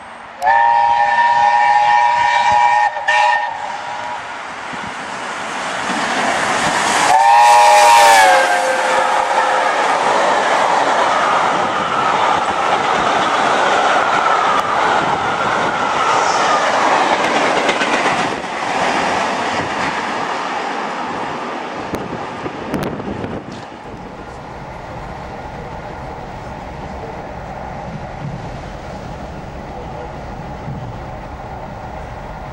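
A passing express train sounds a multi-note warning chord twice: first a steady blast of about two and a half seconds, then a second one that drops in pitch as the train goes by. The train then rushes past with a loud rush of wheel and wind noise that fades, followed by a quieter steady rumble.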